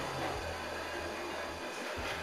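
Room tone: a low steady hum with a faint hiss and no distinct event.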